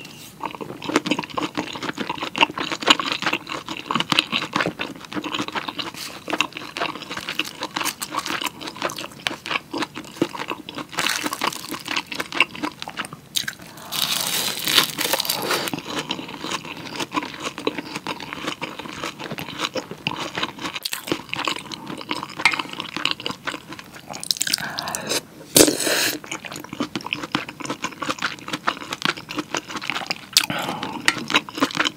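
Close-miked eating sounds of a person chewing kimchi stew and rice: wet chewing with soft crunches and mouth clicks, with a few louder stretches about halfway through and near the end.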